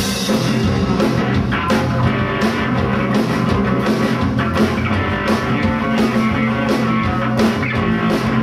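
Live rock band playing: distorted electric guitar, bass guitar and drum kit, with drum and cymbal hits recurring steadily through the passage.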